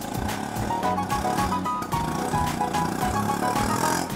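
Light background music of short, quick notes over the steady running of an auto-rickshaw engine.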